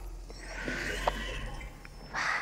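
A soft swell of synthetic noise, a materialize effect played as a virtual car assembles from cubes: it rises from about half a second in, peaks around a second and fades, over a low steady hum with a few faint clicks.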